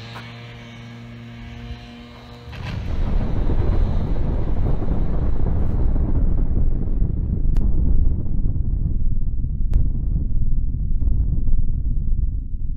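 A steady droning tone, then, about two and a half seconds in, an explosion sound effect breaks in as a long, deep rumble that keeps going.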